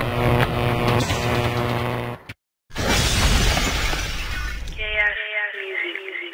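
Logo-intro sound effects: a dense crashing, shatter-like sting with some held tones under it, a sudden brief cut-out about two seconds in, then another noisy sting that gives way near the end to a short falling run of pitched tones.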